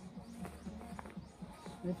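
Faint handling of a lined fabric dog raincoat, with a few soft ticks, over a low steady hum.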